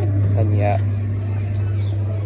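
Coin-operated Stuart Little kiddie ride running, with a steady low hum from its motor. About half a second in, a short voice or sound effect plays from the ride's speaker.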